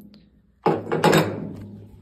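A sudden knock about two-thirds of a second in, trailing off over the next second, as a metal part is handled under the truck's hood.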